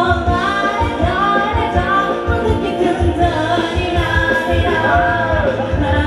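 Live ramwong dance band playing, with a singer's voice over a steady drum beat.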